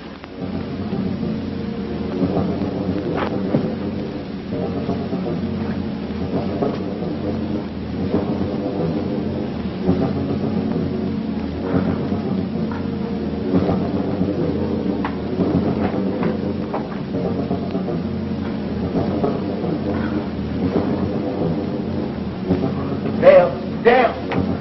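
Film soundtrack: a steady low rumbling drone with sustained tones layered over it, running unbroken. A few sharp, louder sounds come near the end.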